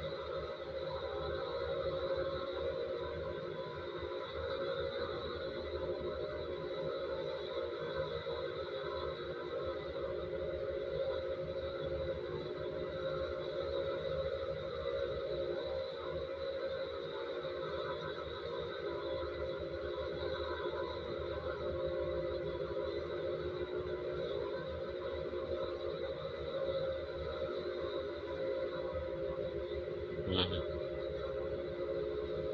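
A steady background drone of several held tones, unchanging and without a beat.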